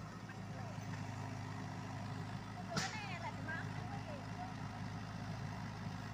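Diesel engines of a Komatsu PC78UU mini excavator and an Isuzu dump truck running steadily with a low hum during loading, with one sharp knock about three seconds in.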